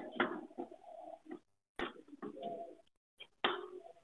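Chalk tapping and scraping on a chalkboard during writing, in short clicks, with a low cooing call running under it.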